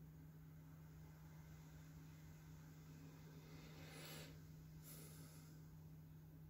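Near silence: room tone with a steady low hum, and two faint short hisses about four and five seconds in.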